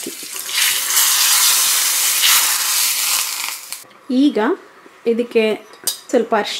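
Hot-oil tempering of cumin, green chillies and curry leaves poured into a pot of boiling water, sizzling loudly for about three seconds and then dying away. A voice speaks in the last two seconds.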